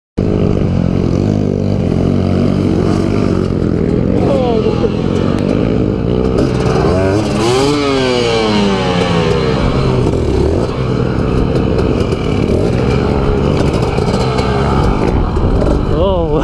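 Husqvarna dirt bike engine running hard through deep mud, its revs rising and falling with the throttle; the biggest rev up and back down comes about halfway through as the bike churns in the mud.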